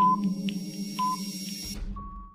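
Countdown timer sound effect: short ticks with a beep each second over a steady electronic drone. Near the end the drone gives way to a low rumble and a short final tone.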